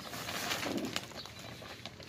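Rustling of a woven plastic fertilizer sack as its gathered neck is handled and twisted by hand, loudest in the first second, with a low bird coo in the background.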